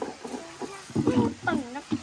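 Children's voices talking and calling out, in short bursts from about a second in.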